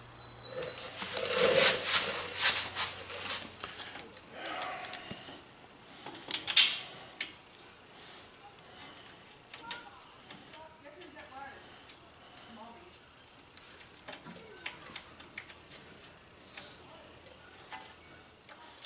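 Light clicks and knocks of a small Tecumseh carburetor and tools being handled and fitted back onto the engine, loudest in the first few seconds and again once about six seconds in. A steady high cricket trill runs underneath.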